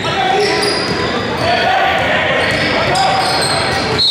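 Basketball game sounds in a gymnasium: a ball bouncing on the hardwood floor mixed with the voices of players and people courtside calling out.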